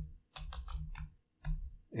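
Computer keyboard typing: a quick run of keystrokes in the first second, then a single keystroke about a second and a half in.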